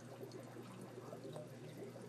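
Faint trickling and dripping of aquarium water over a low steady hum.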